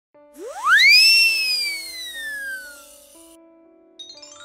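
Cartoon slide-whistle sound effect: a quick rising swoop that peaks in the first second and then slides slowly down, over a hiss. Soft held musical notes change underneath.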